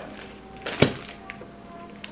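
A single sharp knock a little under a second in as a boxed desk lamp and its metal stand are handled, over quiet background music.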